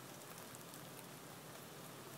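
Light rain falling: a faint, steady hiss.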